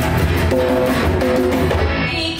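Live band playing an instrumental passage: electric and acoustic guitars over a hand drum keeping a steady beat.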